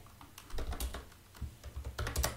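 Typing on a computer keyboard: two short runs of key clicks, one about half a second in and another near the end.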